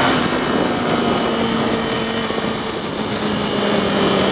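Motorcycle cruising at a steady speed: an even engine tone under heavy wind rush on a helmet-mounted microphone.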